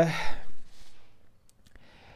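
A man's breathy sigh into a close microphone, exhaling right after a drawn-out "aah" and fading within about half a second, followed by faint breaths and a couple of small clicks.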